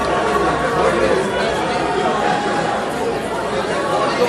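Indistinct chatter: several voices talking over one another, with no single clear speaker.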